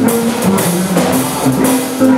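Live blues band playing between sung lines: electric guitar, electric bass and drum kit, with cymbals and snare hits over the bass notes.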